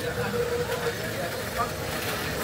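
Voices talking over a steady low rumble of street traffic.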